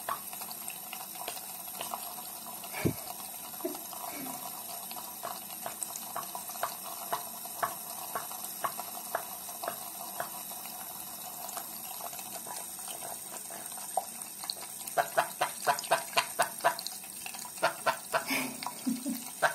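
Tap water running steadily into a sink, with a sun conure making short clicking noises about every half second. Near the end the clicks turn into a quick, louder run of about five a second; a single thump comes about three seconds in.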